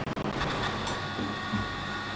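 Countertop electric oven running with a steady hum and a faint high whine.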